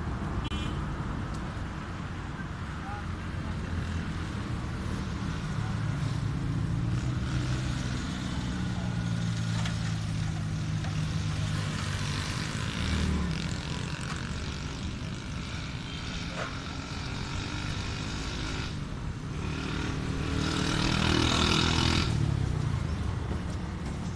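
Road traffic: motor vehicle engines running and passing, with a louder pass near the end.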